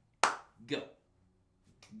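A single sharp hand clap, the loudest sound here, about a quarter second in, followed by a man's voice saying "Go."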